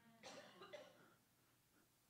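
Near silence, broken by a faint short sound of about half a second, beginning around a quarter second in.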